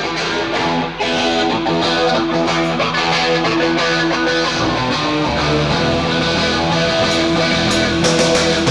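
Live electric guitar, a sunburst Gibson Les Paul, playing loud and mostly on its own. Deep low notes join about four and a half seconds in, and sharp percussive hits come in near the end.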